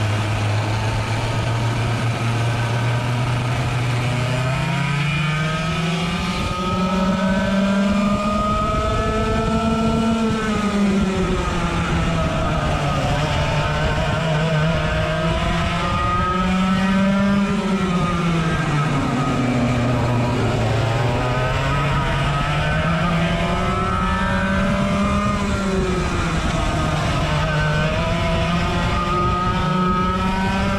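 Onboard sound of a 100cc two-stroke kart engine at racing speed. It holds a low, steady note for the first few seconds, then its pitch climbs and drops again and again as it revs out on the straights and falls off into the corners, three or four times over.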